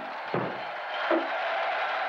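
A short dull thump about a third of a second in, then a brief faint low sound about a second in, over the steady hiss of an old TV commercial soundtrack.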